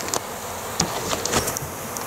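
Swarm of honey bees buzzing steadily around a wall cavity whose comb has just been cut out, with a few light ticks.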